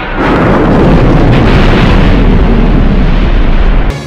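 Film sound effect of a planet blown up by the Death Star's superlaser: a loud, deep explosion roar that starts a moment in, holds steady, and cuts off abruptly just before the end.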